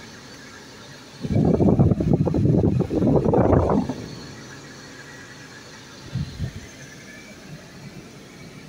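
Steady car-cabin noise from a car moving slowly. About a second in, a loud unidentified sound lasts nearly three seconds, and a brief shorter one comes near six seconds.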